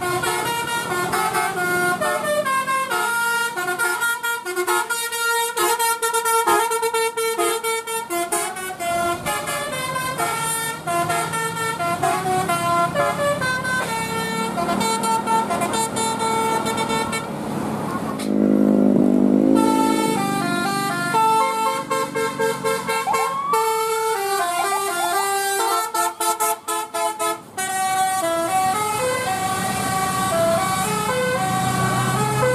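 Telolet multi-tone bus horns playing quick melodic tunes, the notes stepping up and down every fraction of a second. About two-thirds of the way in, a louder, lower blast lasts about two seconds before the tunes resume.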